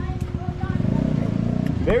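A motorcycle engine running close by, a low, rapid, even pulsing that stops near the end as a voice comes in.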